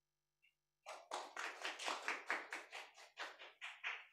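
Light hand clapping welcoming a speaker, distinct claps at about four a second, starting about a second in.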